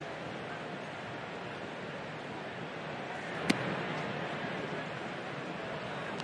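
Steady ballpark crowd noise with one sharp pop about three and a half seconds in, a pitch smacking into the catcher's mitt.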